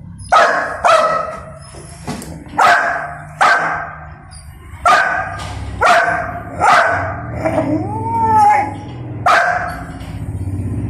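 Young golden retriever barking repeatedly in protest at being kept from its food bowl, with sharp barks roughly a second apart. A drawn-out yelp rises and falls in pitch about eight seconds in.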